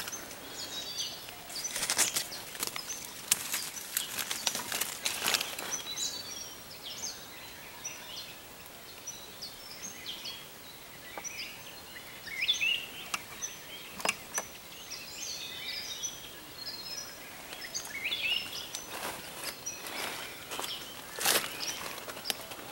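Small wild birds chirping and calling in many short, high notes, with scattered sharp clicks and rustles among them.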